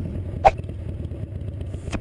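Motorcycle engine idling sound effect: a steady low rumble, with a single short pop about half a second in.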